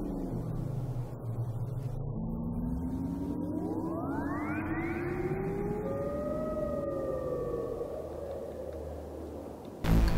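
Sci-fi film soundtrack of synthesizer score and sound design: a low drone, with slow rising glides from about two seconds in and steeper sweeps climbing high around the middle. These are followed by held tones that slowly sink and fade near the end.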